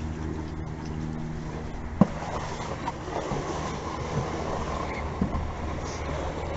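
Wooden paddle and pole worked from a flat-bottomed boat, with water swishing, a sharp knock on the hull about two seconds in and a few lighter knocks after it. A steady low hum runs underneath.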